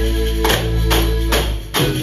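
Live Galician traditional music: the singers' pandeiretas (jingled frame tambourines) strike about every half second over held low notes from the band's double bass and accordion.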